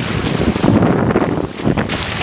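Wind buffeting the microphone: a loud, low rushing noise that dips briefly about one and a half seconds in.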